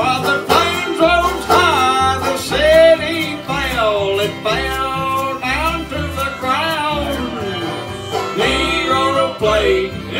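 Live old-time jug band music: clawhammer banjo, acoustic guitar, fiddle, upright bass and washboard playing an instrumental break between sung lines. A lead melody slides and bends over a steady pulsing bass beat.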